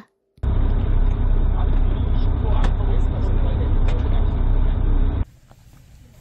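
A loud, steady low rumble that starts after a brief silence and cuts off abruptly near the end, giving way to a faint quiet background.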